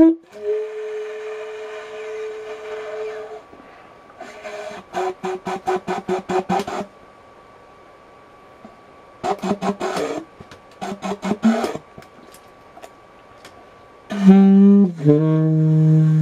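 Solo improvised single-reed woodwind playing: a held note, then two runs of fast staccato notes at about eight a second, then a loud, low held note near the end.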